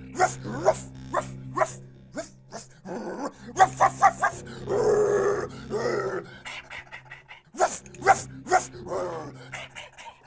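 Dog-like barking, about two sharp barks a second, with a longer growl near the middle, over a steady low hum.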